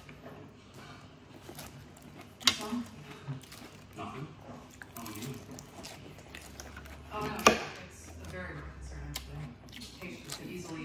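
Close-miked eating sounds: a metal fork scraping and clinking in a ceramic bowl of salad as lettuce and cucumber are speared, with moist chewing. Two sharp clinks stand out, about two and a half seconds in and, loudest, about seven and a half seconds in.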